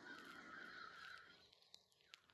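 Near silence: a faint sustained sound fades out about a second and a half in.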